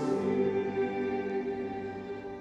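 Piano and violin holding the closing notes of a slow piece, the sound fading away as it ends.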